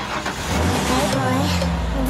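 A motor vehicle engine running and getting louder near the end, with voices under it.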